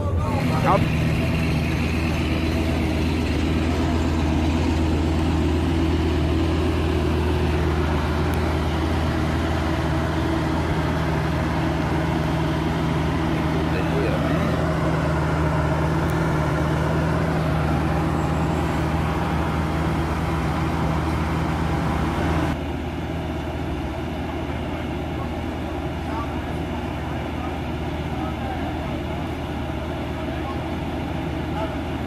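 Sports-car engines idling steadily, a low, even hum. About two-thirds of the way through the sound drops suddenly to a quieter, lower idle.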